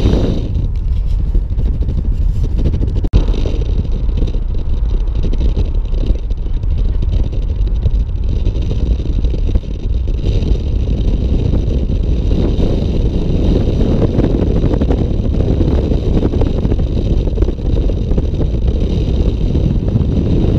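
Car driving at highway speed: a loud, steady rumble of wind buffeting the microphone mixed with road noise. There is a single sharp click about three seconds in.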